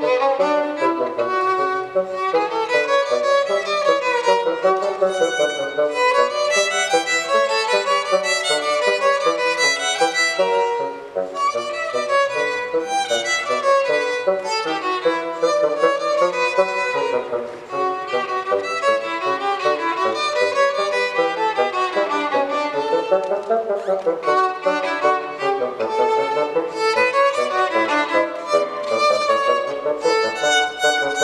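Violin and bassoon playing a Baroque-style duet together, in fast-moving lines, with two brief breaks in the phrasing about eleven and seventeen seconds in.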